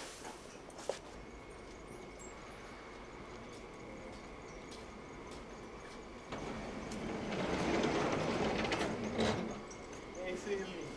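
Heavy sliding barn door rumbling along its track as it is pushed open, for about three seconds, ending in a knock. Before it there is only a low, steady barn background.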